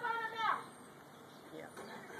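A woman's voice holding one drawn-out syllable for about half a second, then faint outdoor background.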